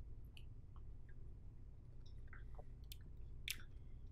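Faint mouth sounds of people sipping beer and swallowing: a scatter of small clicks and smacks over a low, steady room hum.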